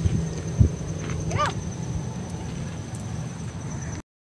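Outdoor background noise with a low steady hum, a single thump just over half a second in, and a short pitched call that bends up and down about a second and a half in.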